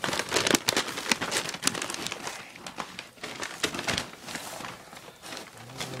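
Brown paper shipping bag crinkling and rustling as hands dig into it, with irregular crackles that are densest in the first couple of seconds and thin out toward the end.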